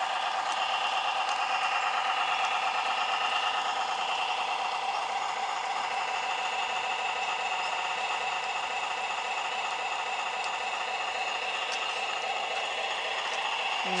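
Electronic diesel sound module on a garden-railway locomotive playing a steady, rapid chugging engine sound through a small loudspeaker, tinny with little bass. It sounds like a small single- or twin-cylinder engine.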